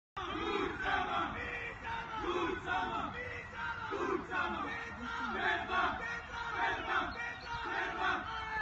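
A team of football players huddled together, chanting and shouting the same word over and over in unison as a victory chant, with repeated rhythmic shouts.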